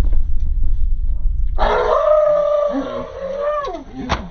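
A man screams: one long, high, wordless cry starting about a second and a half in, lasting about two seconds and sliding down at the end. It is a startled reaction to finding roaches in his food. Before it there is a low rumble.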